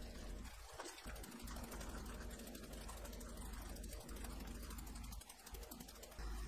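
Faint, rapid, even ticking of a fine-mesh sieve being shaken to dust flour over skewered shrimp on a metal tray.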